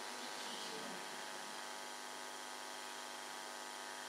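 Faint, steady electrical mains hum and hiss, with no other distinct sound.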